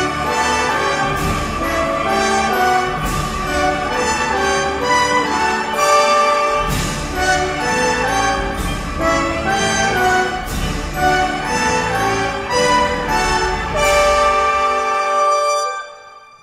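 Multitracked French horns and trumpets playing a loud passage of short accented chords, ending on a long held chord that cuts off suddenly at the very end.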